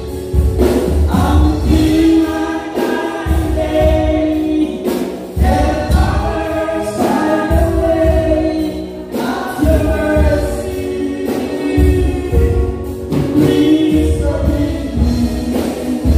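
Gospel music played live: a choir singing over a band with deep bass and a steady beat.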